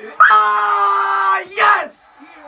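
A young man screaming in jubilant celebration: one long yell held on a steady pitch for over a second, then a short second shout.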